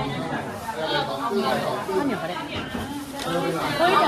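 Group chatter: several people talking at once in Thai.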